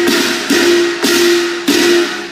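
Closing bars of a Cantonese opera piece with orchestra: three sharp percussion strikes over a steady held note.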